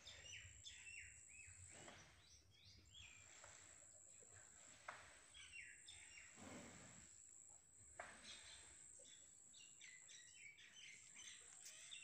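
Near silence with faint birds chirping now and then.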